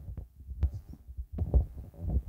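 Handling noise: soft low thuds, with a few faint clicks in the first second.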